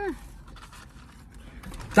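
A person chewing French fries with soft, faint munching, after a short hummed "mm" at the start; a laugh breaks in at the very end.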